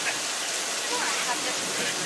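Hidden sprinklers spraying water over a film set to make artificial rain, a steady hiss like falling rain.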